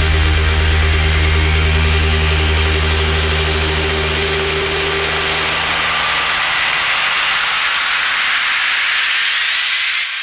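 House-music breakdown: a held bass note fades out over the first seven seconds while a rising white-noise sweep climbs higher and higher, building up to the next section, then cuts off suddenly at the end.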